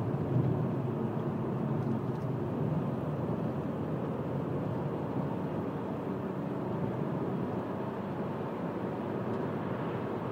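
Steady road and engine noise heard from inside a moving car's cabin: a low, even rumble of tyres on tarmac and the engine at a constant cruise.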